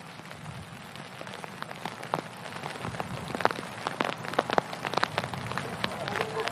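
Rain pattering on surfaces: a steady hiss with many scattered sharp drop ticks, growing louder toward the end.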